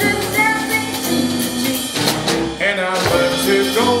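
Live band performance: singers over drum kit, electric bass, keyboard and electric guitar, playing steadily throughout.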